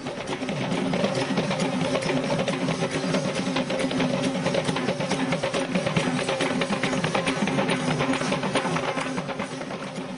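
Traditional Kandyan procession music: drums beaten fast and continuously, with a steady held piped tone sounding over them.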